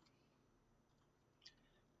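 Near silence: room tone, with one faint short sound about one and a half seconds in.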